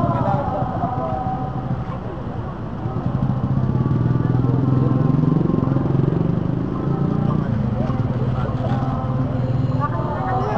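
A motor vehicle engine running close by, its pitch rising and falling again about four to six seconds in, with voices of a crowd underneath.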